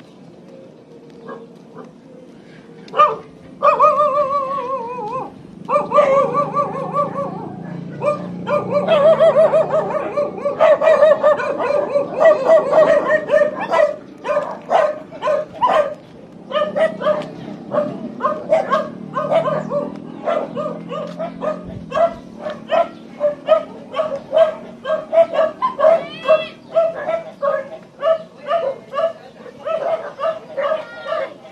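A dog barking: drawn-out wavering calls for the first half, then a steady run of short repeated barks.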